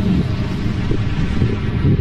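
A loud, steady low rumble with a faint wind-like hiss over it: the documentary's soundtrack drone under the flight over Titan.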